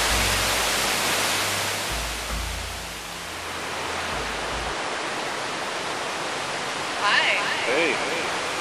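Steady rushing of a waterfall's white water, loudest in the first couple of seconds and then easing to an even rush. A brief pitched sound, louder than the water, comes about a second before the end.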